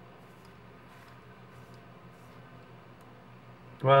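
Faint, soft scratching of a Harry's Truman cartridge razor drawn dry across forearm hair, with no shaving cream, a few light ticks over a low steady room hum. A man's voice starts right at the end.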